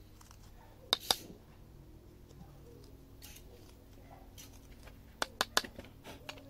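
Knife blade cutting into a wooden bow-drill fireboard, opening up the ember notch so the ember can come out of the hole: two sharp cuts about a second in, then a quick run of four near the end.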